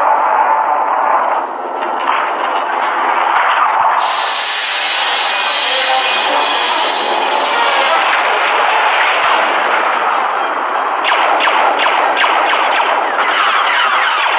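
Film soundtrack of a sci-fi boarding battle: orchestral score with an explosion as a door is blasted open, then rapid blaster fire in the last few seconds.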